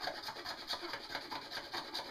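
Homemade butter churn, a wooden dasher pumped quickly up and down through the hole in the plastic lid of a glass mason jar of heavy cream, rubbing and squeaking slightly with each stroke in an even, rapid rhythm. This is the start of churning, with the cream still liquid.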